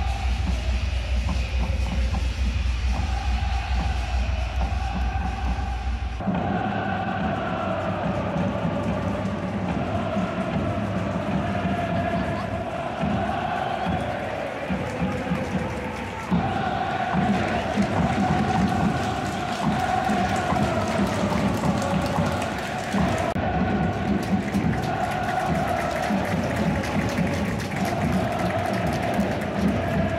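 Massed football supporters singing chants in unison over a beat in a full stadium. A deep low rumble sits under the first six seconds and ends abruptly, and the chant changes abruptly again about halfway through.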